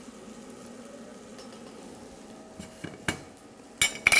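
Low steady kitchen background, then a few sharp knocks and clicks of a metal cheese grater and utensils set on the steel worktop in the last second and a half.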